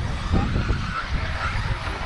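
Electric off-road RC buggies running on the track: a faint motor whine rising briefly about a third of a second in, over a steady rumble.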